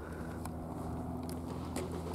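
Quiet outdoor background: a low, steady hum with a few faint clicks.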